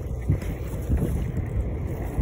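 Wind buffeting the phone's microphone while cycling, an uneven low rushing noise.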